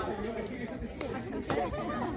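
Chatter of several people talking at once, with a sharp tap about one and a half seconds in.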